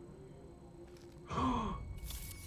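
Quiet for over a second, then a short sigh about a second and a half in.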